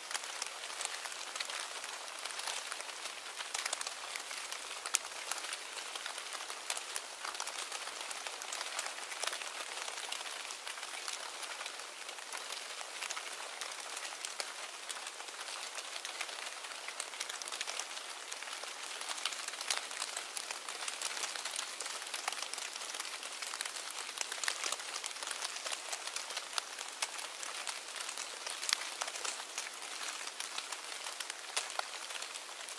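A steady hiss of noise dense with fine ticks and crackles, like rain pattering on a surface, holding even throughout.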